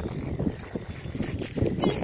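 Wind noise on the microphone, with faint crinkling of a clear plastic bag being handled and opened.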